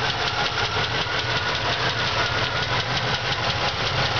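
Oldsmobile 350 V8 idling steadily with a fast, even ticking. The tick fits the exhaust manifold leak on the left side and the worn lifter that the owner points out.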